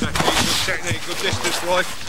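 Voices calling out on a football training pitch, with several sharp knocks of a football being served and caught as a goalkeeper dives for a save. The coach starts to speak near the end.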